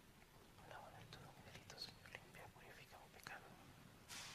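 Near silence with a faint whispered voice and a few light clicks.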